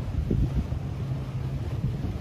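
Wind buffeting a phone microphone on a boat over choppy water, a dense low rumble with a steady low hum underneath.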